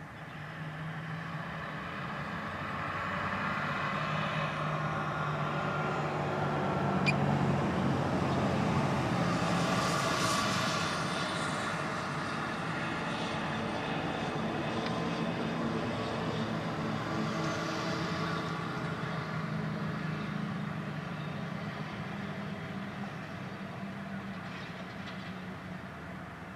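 Diesel switcher locomotives, a GP15-3 leading an MP15DC, running with a freight train of gondolas. The sound builds to its loudest around the middle and then eases off.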